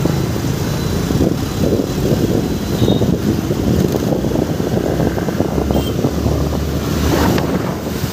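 Road noise close beside a city bus: a steady low engine rumble with wind buffeting the microphone.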